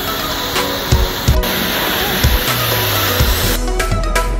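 Background music with a steady beat, over the loud steady hiss of a pressure-washer jet rinsing snow foam off a van, which cuts off about three and a half seconds in.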